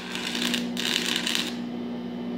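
Electric arc welding on exhaust pipe: the arc crackles and sizzles steadily, then stops about one and a half seconds in, over a steady low hum.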